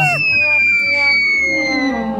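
Cartoon whistle sound effect, one long tone sliding slowly and steadily downward in pitch, with a short high squeal at the start and faint music underneath.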